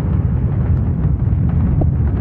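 Loud, deep, steady rumble of a cinematic boom sound effect, like a distant explosion or thunder.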